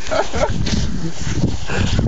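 Wind rumbling on the microphone, with faint indistinct voices.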